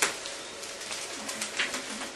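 Steady background hiss with a sharp click at the start, then soft scattered rustling and a brief faint low hum a little past a second in.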